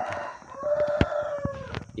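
A long, drawn-out animal call, held on one pitch for over a second and arching slightly up and down, after a shorter call at the start. Sharp clicks are scattered through it, one louder about a second in.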